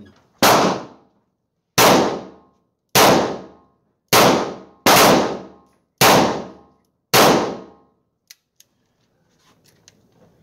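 Two-and-a-half-inch Smith & Wesson Model 19 .357 Magnum snub revolver fired in a string of shots about a second apart, each a sharp report that rings off in the indoor range. Two faint clicks follow the last shot.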